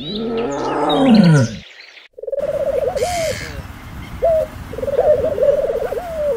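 A tiger's roar, one deep call falling in pitch, in the first second and a half. After a brief gap, feral pigeons cooing in repeated rolling, warbling calls.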